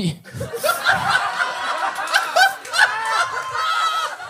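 A room of people laughing together, many voices overlapping, right after a punchline.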